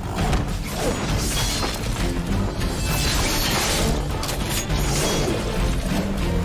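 Action-trailer soundtrack: driving music with fight sound effects, a run of hits and crashes from a scythe-and-gun battle against wolves.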